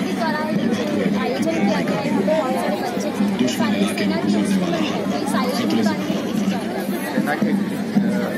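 Crowd of many voices chattering at once, with children's and adults' voices overlapping in a steady, loud babble.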